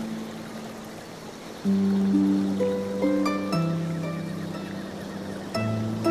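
Film score music: a soft held low note, then from about two seconds in a louder sustained bass note with a slow line of higher plucked notes stepping above it.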